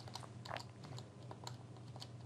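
A few faint, scattered clicks of a computer being operated, the strongest about half a second in, over a low steady hum.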